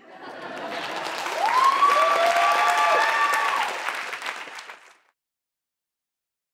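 An audience applauding at the end of a talk, swelling over the first second or two and then fading, with a couple of long whoops from the crowd in the middle. The applause cuts off about five seconds in.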